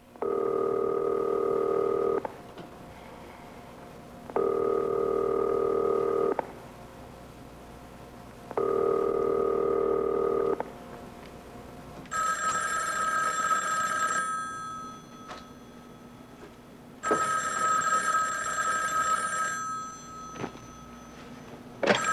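A telephone ringing, five rings in all. The first three are lower-pitched, each about two seconds long with two-second gaps. The last two are longer, brighter and more bell-like, about five seconds apart.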